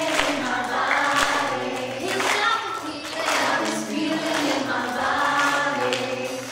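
Choir of young children singing a song together in unison over backing music.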